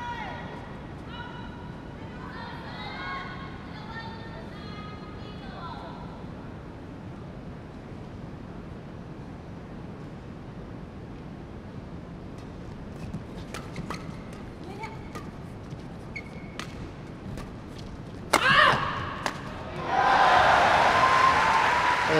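Badminton rally in an arena hall: irregular sharp racket hits on the shuttlecock, then a player's shout and a loud burst of crowd cheering near the end as the point is won.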